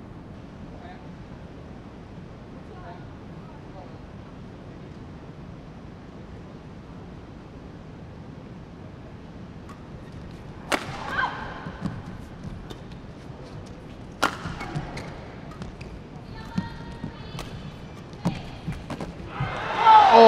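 A badminton rally in an indoor arena: after a stretch of low hall murmur, sharp racket strikes on the shuttlecock come about every one to four seconds, with a brief shoe squeak on the court. Loud crowd shouts break out right at the end as the rally finishes.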